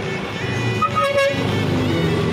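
Road traffic with a short car horn toot about a second in, over steady background music.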